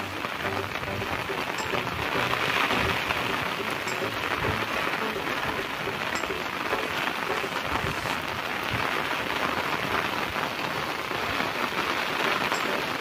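Heavy rain falling steadily, an even, unbroken hiss.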